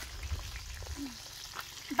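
Chicken pieces and skins frying in oil in a pan over a wood fire, a faint steady sizzle.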